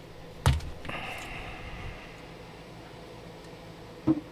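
A sharp click, then about a second of soft scraping and rustling as a folded microphone boom arm is freed from its tie wrap and swung open on a desk mat.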